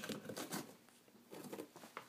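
Faint rustling with a few soft clicks from a rabbit on a woven grass house, the dry hay of the house scratching under it.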